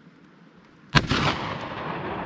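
A single gunshot about a second in, fired at a target, its report echoing and dying away over the following second.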